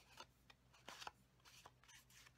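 Near silence with a few faint, short taps and rustles of cardstock being handled on a craft mat.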